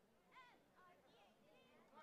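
Near silence, with faint distant voices calling out across the field, the clearest about half a second in.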